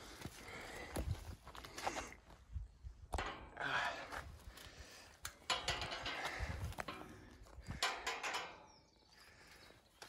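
Irregular knocks, rattles and footsteps on gravel as a galvanised steel field gate is handled and passed through.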